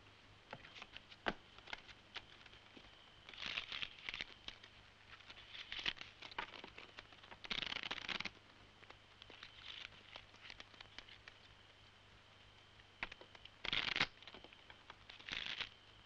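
Playing cards being shuffled and dealt at a table: short flurries of riffling and flicking every few seconds, the longest about two seconds past the middle.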